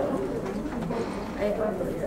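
A bird cooing softly, a few wavering low calls.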